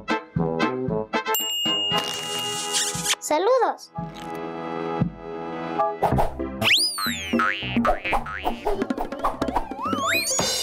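Bouncy children's cartoon music with comic sliding-pitch sound effects: one dips and rises about three and a half seconds in, and a high one sweeps up and falls away around seven seconds in.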